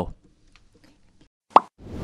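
A single short, sharp pitched blip of an outro sound effect, about a second and a half after the end of a narrator's voice and a near-silent gap. A swell rises near the end as the outro music begins.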